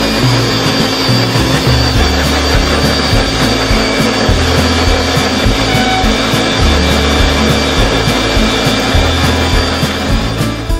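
Electric countertop blenders running steadily, blending fruit juice, with a dense whirring and a thin motor whine, under background music with a stepping bass line.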